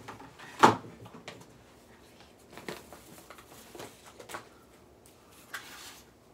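Rummaging noises, a run of knocks and rustles as things are moved and searched through. The loudest is a sharp knock about half a second in, followed by several softer ones.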